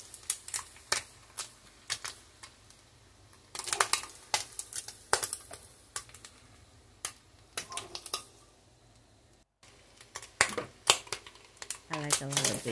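A metal kitchen utensil clicking and tapping against a nonstick frying pan as bacon strips are lifted out and fresh strips laid in. The clicks come in scattered clusters of a few sharp taps each.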